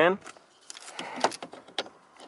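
Faint clicks and rustling of hands working a car's negative battery connector back into place, with a few sharp clicks in the second half.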